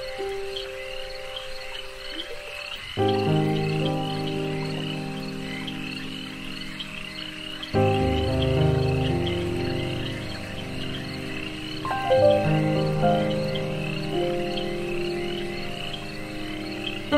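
Ambient meditation music: sustained, held chords that shift to a new chord about every four to five seconds, over a continuous chorus of frog calls repeating quickly, two or three a second.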